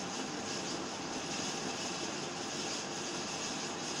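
A steady, even rushing noise with no distinct events, holding the same level throughout.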